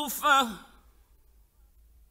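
A male Quran reciter's voice in mujawwad recitation closes a phrase with one short syllable whose pitch slides downward, fading out within the first half second. A pause with a faint low hum from the old radio recording follows.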